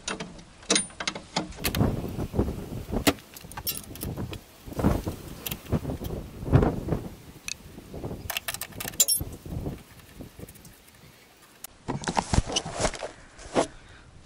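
Irregular metallic clicks and clinks of a wrench working the bolts of a VAZ 2106's upper front ball joint, metal tapping on metal as the joint is unbolted from the suspension arm.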